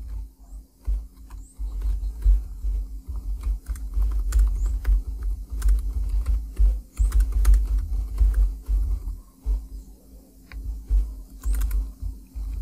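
Computer keyboard typing: a run of irregular key clicks with low thuds under them, over a faint steady hum.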